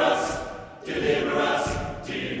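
Men's barbershop chorus singing a cappella in close harmony, holding sustained chords. The sound fades briefly about two-thirds of a second in, and the voices come back in strongly just before the one-second mark.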